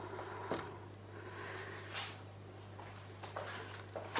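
A few faint knocks and a short scrape as a stick is set under the edge of a canvas on a worktable, over a steady low hum.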